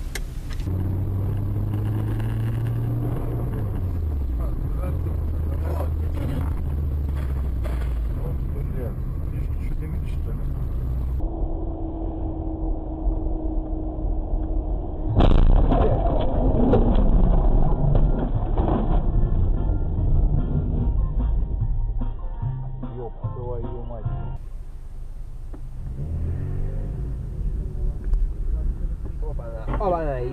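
Car engine and road noise from dashcam recordings, in several clips cut one after another, with a loud sudden noise about fifteen seconds in.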